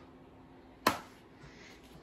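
A single sharp click or tap about a second in, dying away quickly, over quiet room tone.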